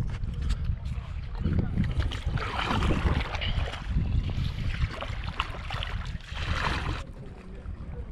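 Stand-up paddleboard paddle strokes splashing and swishing through lake water, roughly one stroke a second, with wind buffeting the microphone.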